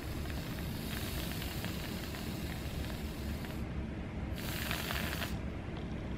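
Aerosol can of whipped cream spraying onto a strawberry: one long spray, a short break a little before four seconds in, then a second shorter spray.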